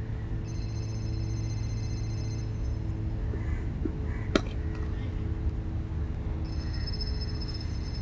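Cricket bat striking the ball once, a single sharp crack about four seconds in. It sits over a steady low hum with faint held tones.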